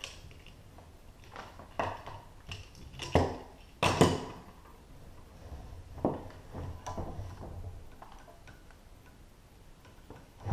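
Metal climbing hardware, carabiner and rope device, clinking and clacking as it is handled and reset on the rope. There are several separate knocks over the first seven seconds, the loudest about four seconds in.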